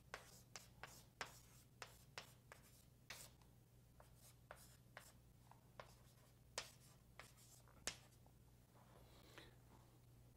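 Faint, irregular short strokes and taps of someone writing, with a steady low electrical hum underneath.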